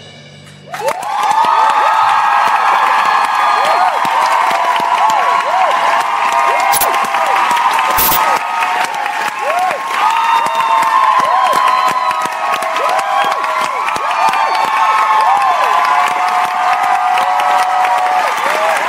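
A held music chord cuts off just under a second in and a theatre audience breaks into loud cheering, high-pitched screams and applause, which keeps up steadily.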